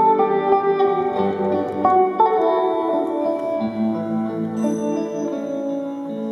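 Live instrumental music: an electric guitar playing a slow melody over sustained chords, with no voice.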